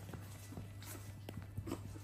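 A small puppy making faint short vocal sounds and scuffling about in towels, with scattered soft taps, over a steady low hum.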